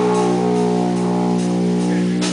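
Distorted electric guitar holding one sustained chord through a Marshall amplifier, ringing out steadily: the held closing chord of a live doom metal song.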